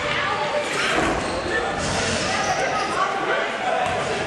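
A basketball bouncing on a hardwood gym floor, with players' voices echoing in the large hall.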